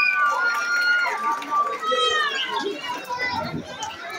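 Crowd of children's voices talking and calling out over one another, with no drumming.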